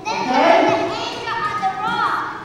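Children's voices, high-pitched talk and chatter among a group of kids.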